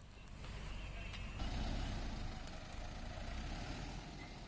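A heavy truck's engine running, with a low rumble and road noise that swell in the middle and ease off near the end.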